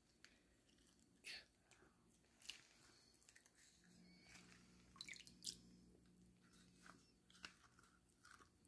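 Near silence, with a few faint, short clicks and rustles.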